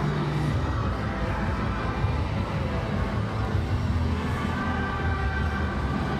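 Music playing over a hockey stadium's public address just after a goal, over a steady low background of open-air stadium ambience.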